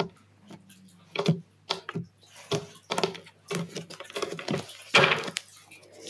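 Cards being handled and laid out on a table: a run of irregular light clicks and taps, over a faint steady hum.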